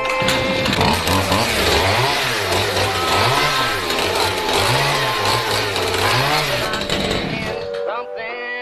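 A chainsaw revving up and down over and over, about every second and a half, over upbeat music; the revving stops shortly before the end.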